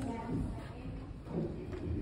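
Indistinct voices in a large hall, faint and intermittent.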